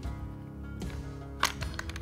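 Steady background music, with one sharp metallic click about one and a half seconds in and a few lighter clicks after it. The clicks come from the Browning Maxus II semi-automatic shotgun's action being worked by hand as a function check after reassembly.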